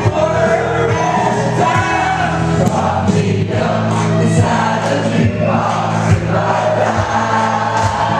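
Karaoke performance: a woman and a man singing into microphones over a country backing track played through the PA.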